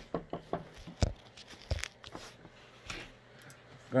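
Handling noise from a phone being picked up and repositioned: a series of irregular knocks and clicks with rustling rubbing against the microphone, the loudest knock about a second in.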